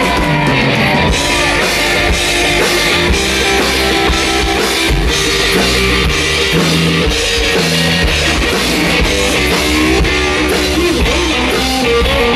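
Live blues-rock band playing a loud, steady guitar-led passage, with electric guitar over a drum kit.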